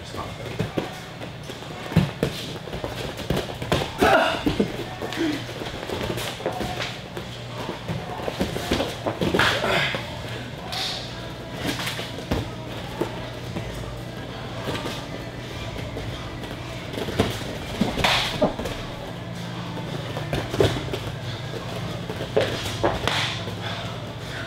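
Background music with low held notes, broken by irregular light thuds of padded shin guards meeting in a tapping leg-kick drill, with bare feet shuffling on training mats.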